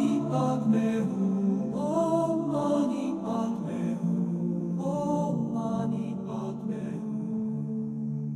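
Music: a chanted vocal mantra sung in phrases of a second or two, with short pauses between, over a steady low drone.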